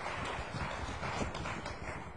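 Audience applauding: a crowd's dense, continuous clapping that eases slightly toward the end.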